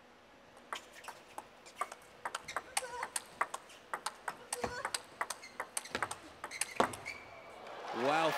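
Table tennis ball clicking off the rackets and the table in a fast rally, one sharp tick after another in quick succession, after a serve.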